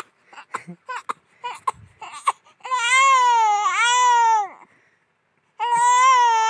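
A one-month-old baby crying: a few short fussy sounds, then a long wailing cry that breaks briefly in the middle, and after a short pause another long cry begins near the end.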